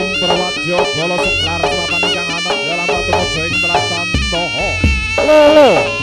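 Live jaranan gamelan music: a nasal, reedy wind melody, typical of the slompret shawm, over quick pitched percussion and low drum and gong strokes. Near the end a loud held note bends downward.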